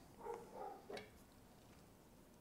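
Near silence: room tone, with a few faint soft sounds in the first second and a light click just before the one-second mark.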